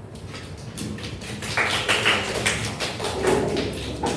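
Irregular knocks and taps with a scrape or two of chairs and desks as people shift about a classroom, busiest in the middle.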